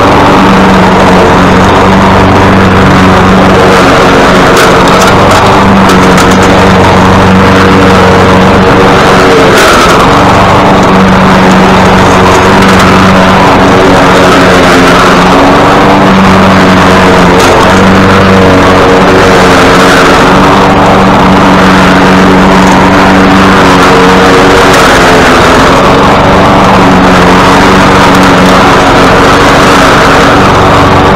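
Poulan gas push mower's single-cylinder engine and blade running under load while cutting grass, a loud continuous drone whose tone shifts every few seconds as the load changes.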